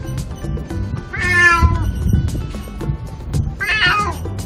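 A senior calico cat meowing twice, two drawn-out meows about two seconds apart, the second near the end.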